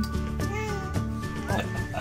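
Background music with a steady beat, with a baby vocalising over it in two short, high, gliding squeals.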